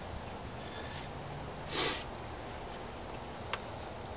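A person's short sniff about halfway through, over a faint steady hiss, with a single small click near the end.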